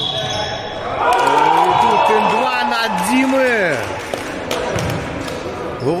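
A basketball being bounced on a gym floor, with voices shouting and calling over the play as a basket is scored, all echoing in a large hall.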